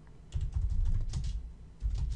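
Typing on a computer keyboard: a quick run of keystrokes starting about a third of a second in, then another short burst near the end.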